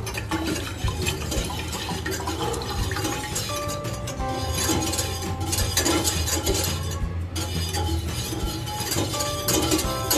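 Milk pouring from a carton into a saucepan of melted butter, under background music with steady held notes.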